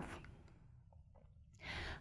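A pause in a woman's speech: near silence, then a short audible in-breath near the end as she prepares to speak again.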